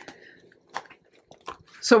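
Plastic budget binder handled and opened: soft crinkling of vinyl pockets with a few light clicks, then a woman's voice starts just before the end.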